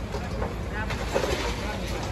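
Steady low engine rumble, with short bursts of people's voices about a second in.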